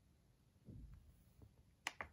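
The down push button on an EPH RDTP programmable thermostat pressed, giving one sharp click near the end, with a softer low thump and a faint tick before it. The press lowers the programmed target temperature.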